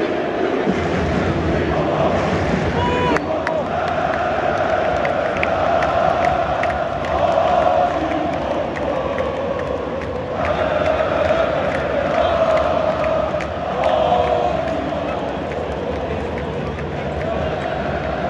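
A packed football stadium crowd of Galatasaray supporters chanting together in unison. The mass of voices swells and falls in waves, with a brief dip about ten seconds in.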